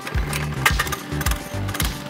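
Background music playing over a small single-cylinder mini bike engine, the Oryx Earth's 105cc engine, running.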